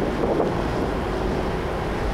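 Wind buffeting the microphone on the open deck of a ship under way, over the rushing water of its wake and a faint steady hum.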